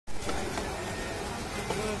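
Steady noise of a busy outdoor street market, with faint voices in the background.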